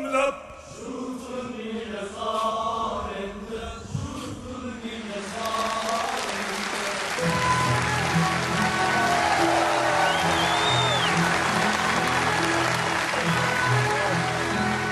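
The last phrases of a male opera aria sung with orchestra, then an audience breaking into applause about five seconds in, with a whistle from the crowd around the middle and music playing on under the clapping.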